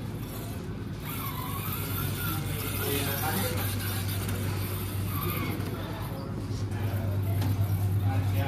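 RC rock crawler's brushless electric motor whining, its pitch rising and falling with the throttle as it crawls over the wooden obstacles, over a steady low hum and background voices.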